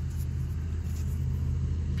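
A steady low engine drone at an even pitch, running without change.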